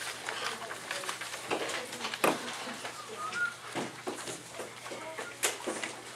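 Classroom background of students' low chatter and paper rustling as packets and sheets are handled, with a few sharp knocks, the loudest about two seconds in and another near the end.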